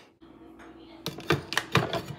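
About five sharp clicks and knocks in the second second, from a glass coffee carafe and a ceramic mug being handled at a drip coffee maker, over a steady low hum.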